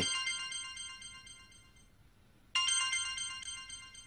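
A telephone ringing: two rings with a fast trill, each starting suddenly and fading over about a second and a half.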